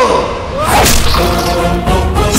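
Cinematic whoosh sound effect: a falling pitch sweep, then a sharp swish a little under a second in, with music coming in after it.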